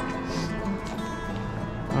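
Church bells ringing, their long tones overlapping and hanging in the air.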